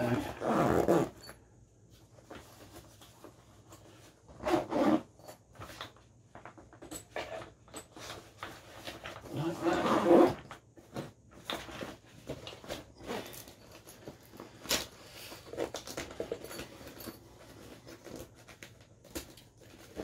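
A padded nylon antenna carry bag being handled and closed with its zipper: rustling, soft knocks and clicks. Several short voice-like bursts break in, the loudest about ten seconds in.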